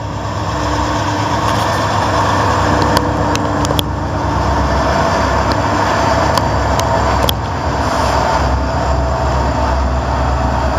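Three diesel-electric freight locomotives passing at close range: a Norfolk Southern GE Dash 8, a Union Pacific SD70M and a Norfolk Southern SD60. Their diesel engines make a loud, steady rumble, broken by occasional sharp clicks.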